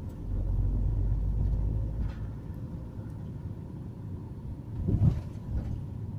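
Car driving slowly on an asphalt road, heard from inside the cabin: a steady low rumble of tyres and engine, louder for the first two seconds, with one short low thump about five seconds in.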